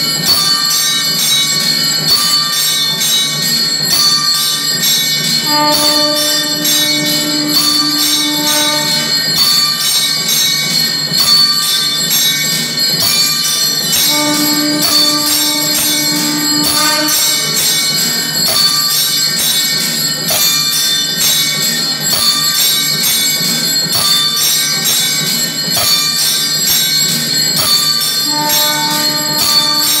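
Temple bells clanging rapidly and without a break during the lamp offering. Over them a conch shell is blown in long held notes, three times: about five seconds in, about fourteen seconds in, and near the end.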